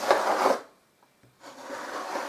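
Spatula scraping and spreading filler paste over a papier-mâché-covered cardboard surface. There is one stroke in the first half second, then another begins near the end.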